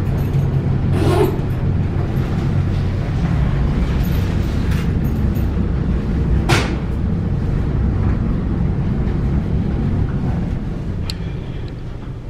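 Dover traction elevator car in a fast run, a steady low rumble of ride and shaft-air noise inside the cab that eases off near the end as the car slows. A single sharp click comes about six and a half seconds in.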